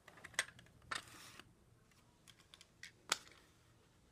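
Faint clicks and a short scuff as die-cast toy cars are handled and set down on a paper track, with the sharpest click about three seconds in.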